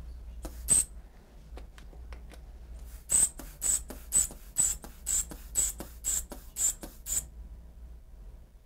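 Hand-squeezed rubber inflation bulb of a manual blood pressure cuff, pumped about twice a second for some four seconds, each squeeze a short airy puff as the cuff on the arm is inflated. One similar short sound comes just under a second in, before the pumping starts.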